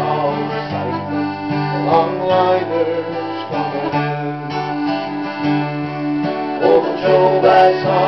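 Instrumental break in a Newfoundland folk song: guitar and bouzouki strumming a steady chord rhythm under held, sustained melody notes.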